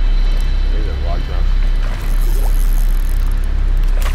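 Heavy, uneven rumble of wind buffeting the microphone, with a couple of short voice exclamations.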